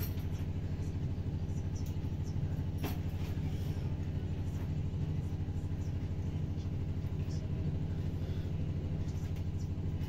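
A steady low rumbling hum throughout, like a running motor, with a few faint sharp clicks, the clearest about three seconds in.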